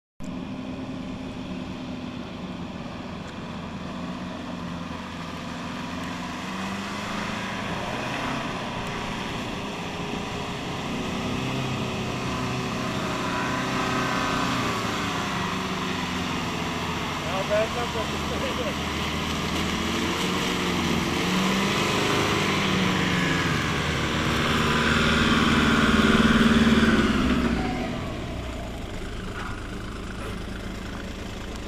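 Nissan Patrol 4x4 engine labouring through a flooded, muddy track, its revs rising and falling. It grows louder as the vehicle comes closer, is loudest a few seconds before the end, then drops away.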